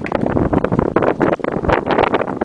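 Loud, irregular rustling and clatter from the control box and its cardboard being handled, with wind noise on the microphone.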